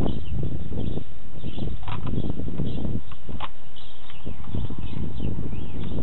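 Knocks and clicks as the parts of an airsoft MP40 are handled and fitted back together, over a steady low rumble, with birds chirping now and then.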